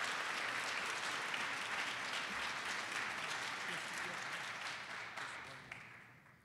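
Audience applauding steadily, then fading out near the end.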